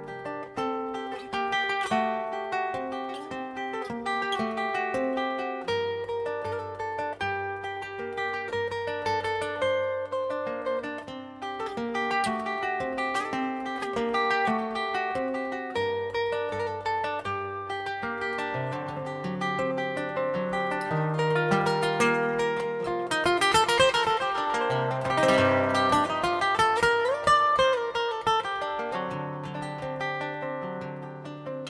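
Instrumental live music led by a nylon-string classical guitar playing a quick plucked melody, with low sustained bass notes underneath from about six seconds in. About three-quarters of the way through, the music gets louder and sliding notes sweep up and down.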